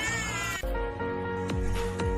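A short meow-like cat sound effect, then background music with held notes and a low beat.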